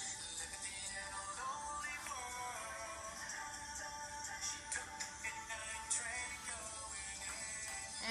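Music playing from a smartphone's built-in speaker pushed into a cardboard toilet paper roll used as a makeshift amplifier. The sound is thin, with almost no bass.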